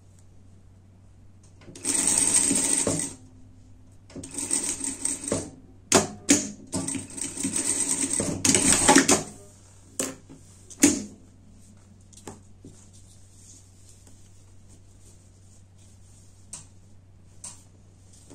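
Industrial straight-stitch sewing machine stitching in three short runs, the last and longest about three seconds, with a few sharp clicks between and after the runs, over a steady low motor hum.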